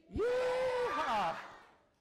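A group of children's voices shouting a long 'yeah' together as the last line of an action song. The shout holds one pitch, then drops and trails off over about a second.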